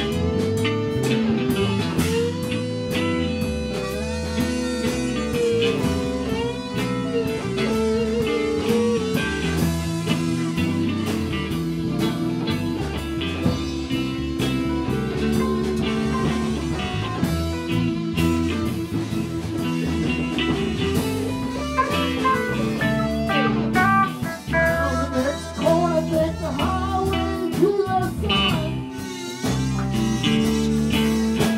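Live rock band playing an instrumental passage with no singing: electric guitars over bass and drums.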